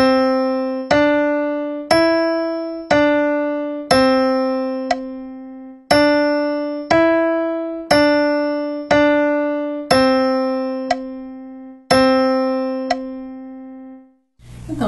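Piano playing a slow stepwise solfège melody in single notes, one per second: C–D–E–D, a held C, then D–E–D–D, a held C and a final held C. Each note is struck and dies away, and the held notes ring for about two seconds.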